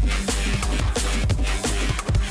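Drum and bass (neurofunk) DJ set played loud through the club's sound system, with a fast drum beat over heavy sub-bass.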